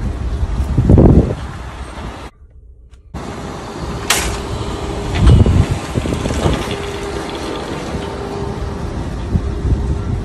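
Metal shopping carts clanking and rattling as they are pulled and tipped apart, over a steady outdoor rumble of traffic. A loud low rumble swells about a second in and again midway. The sound cuts out briefly just after two seconds.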